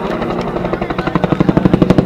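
Cobra helicopter's main rotor beating at about ten thumps a second, growing steadily louder.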